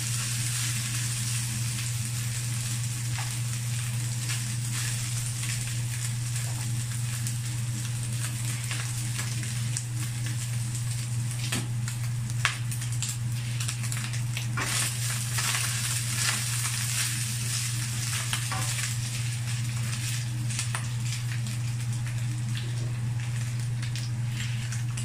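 Ground pork sizzling as it fries in a nonstick wok, a steady hiss with scattered small pops and crackles, over a steady low hum.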